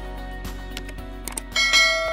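Background music, with a few light clicks, then a bright bell-like chime about one and a half seconds in that rings on: the notification-bell sound effect of an animated subscribe button being clicked.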